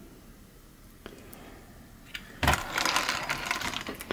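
Kyosho MP10 1/8 buggy being handled and turned over by hand: a rapid rattling clatter of its chassis, suspension and drivetrain parts starts a little past halfway and lasts about a second and a half.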